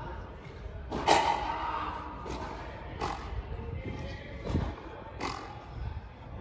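Frontenis rally: the rubber ball smacking off strung rackets and the court's concrete walls and floor, about six sharp hits spaced roughly a second apart, the loudest about a second in.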